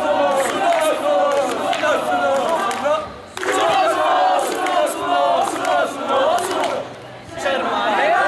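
A group of male voices chanting loudly in unison, in long phrases with a brief break about three seconds in and another about seven seconds in.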